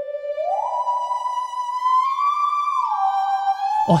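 Theremin playing a slow melody doubled in unison by a solo violin: a held note slides up about an octave within the first second, holds, edges a little higher around two seconds in, then glides down near the end.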